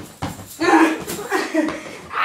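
A person's voice in several short bursts, with no clear words.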